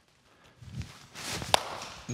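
A baseball bat meeting a softly lobbed ball in a single sharp crack about one and a half seconds in, after a short rustle of the batter's footwork and swing.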